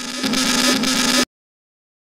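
A loud, harsh burst of distorted noise over a steady low hum, lasting about a second and a half, which gets louder partway through and cuts off abruptly.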